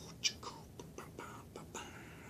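A man whispering softly: a few short, breathy syllables.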